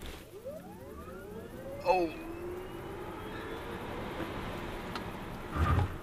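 Tesla Model S P85D's dual electric motors whining under a full-power Insane-mode launch, the pitch climbing steadily as speed builds, with road and tyre noise rising underneath, heard from inside the cabin. A man exclaims "Oh!" about two seconds in, and there is a thump near the end.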